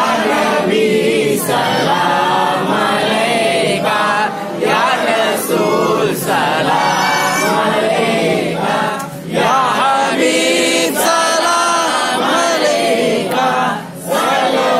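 A group of men's voices chanting a devotional salaam together, unaccompanied, in continuous sung lines with short breaks about four and nine seconds in.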